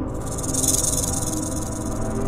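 A rattlesnake rattle sound effect: a dry, high buzzing hiss that starts suddenly and is loudest in its first second, over a steady, dark low music drone.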